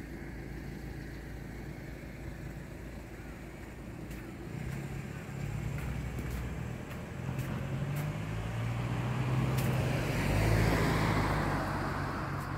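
A car driving past on the road, its engine and tyre noise growing louder through the second half, peaking near the end and then easing off.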